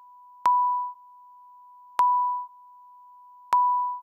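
A high-pitched sine tone from the patch.Init() Eurorack module's example Pure Data patch, sounded three times, about one and a half seconds apart, by a short decaying envelope triggered by gate pulses from a Tempi clock module. Each beep starts with a click and dies away over about half a second. A faint steady tone of the same pitch carries on between the beeps.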